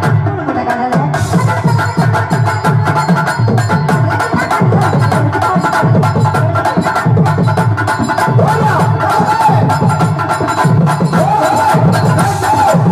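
Live Tamil stage-drama music: tabla and hand drums beat a steady rhythm of about two strokes a second under a sustained harmonium melody, with sharp clicks on top.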